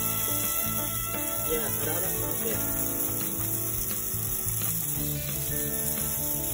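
Steady hiss of water spraying from a garden-hose nozzle onto live blue crabs, under background music with held notes.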